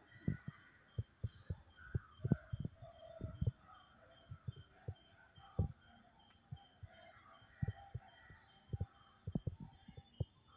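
Irregular dull low thumps and knocks, some in quick clusters, over faint distant voices and a faint evenly pulsing high chirp.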